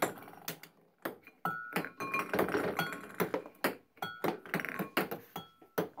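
Celluloid ping-pong balls bouncing on a table and a glass jug: a rapid, irregular run of light clicks, some with a short ring.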